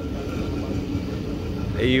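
Steady low rumble of car engines running nearby, with no sudden events. A man's voice comes in near the end.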